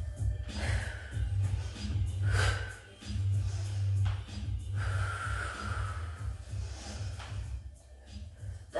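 Instrumental jazz hip-hop background music with a steady bass beat, over a woman's forceful breaths, several sharp exhalations, as she does sit-ups.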